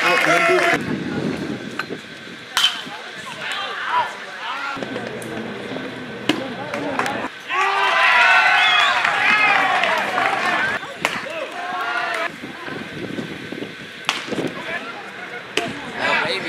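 Players and spectators calling out around a baseball field, with voices loudest about halfway through. Several short, sharp pops spaced a few seconds apart: a baseball smacking into a leather glove as it is thrown around.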